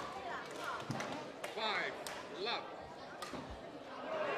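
Two short shouts from badminton players, about one and a half and two and a half seconds in, with a few sharp knocks on the court floor in a large hall.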